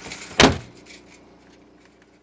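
A car door slams shut about half a second in: one sharp bang, followed by a faint steady hum.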